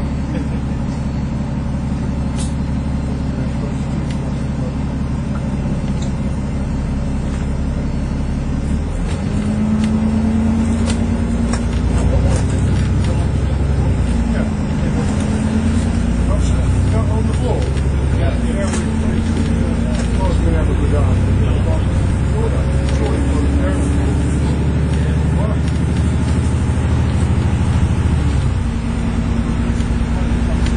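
Alexander Dennis Enviro400 MMC double-deck bus heard from inside, its engine running steadily as it drives along. About nine seconds in the engine note rises and shifts in steps as the bus picks up speed, then it settles back near the end.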